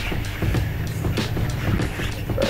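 Bass-heavy music playing through a car stereo with subwoofers, heard inside the car: deep bass dominates under a steady beat.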